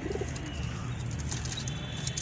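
Domestic pigeons cooing, with one short coo just at the start over a steady low background and a few faint clicks partway through.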